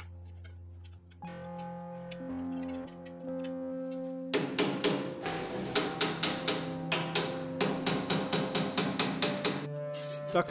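Background music: held low notes that change about a second in, joined about four seconds in by a steady ticking beat.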